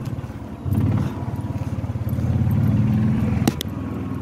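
Small petrol engine of a golf cart running as the cart drives over the grass, with a steady pulsing hum that gets louder about three-quarters of a second in. A sharp click comes about three and a half seconds in.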